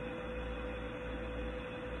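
Steady background hum with a single constant tone and no other events.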